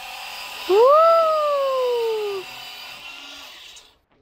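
Cordless pressure washer spraying rinse water onto a car's body: a steady hiss with a faint motor whine that cuts off just before the end. Just under a second in, a loud drawn-out vocal call rises sharply, then slowly falls for about a second and a half.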